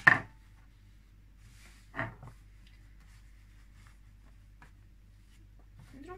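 A sharp metallic click from dressmaking scissors at the start, the loudest sound, then a second, softer knock about two seconds in as cotton fabric is handled, over a low steady hum.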